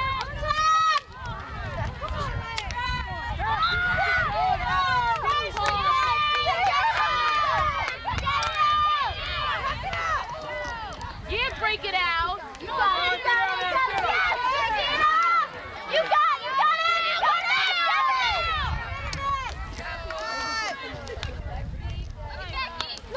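Many voices shouting and calling over one another: spectators and players yelling during a field hockey game, with a low rumble underneath.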